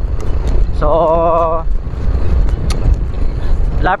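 Steady low rumble of wind buffeting the microphone and a motorcycle running while riding along a road.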